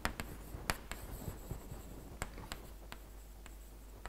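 Chalk writing on a blackboard: a string of sharp, irregular taps and short scratches as letters are written.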